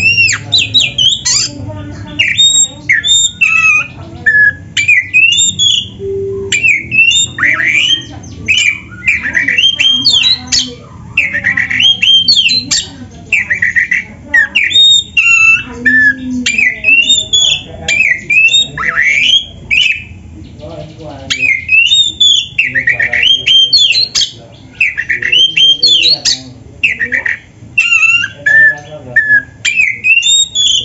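Oriental magpie-robin (kacer) singing loudly: a fast, varied run of short whistled phrases, rising and falling sweeps and chattering notes with brief pauses between them, packed with imitated phrases of other birds.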